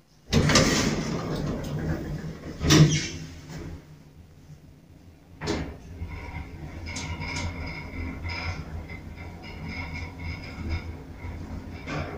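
ATLAS Excell traction elevator: the car doors slide shut and close with a thump about three seconds in. A click follows a couple of seconds later, then the car travels upward with a steady low hum.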